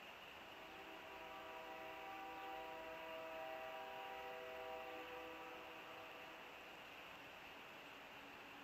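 A distant horn sounding one long, steady chord of several tones for about five seconds, swelling and fading, over a steady background hiss.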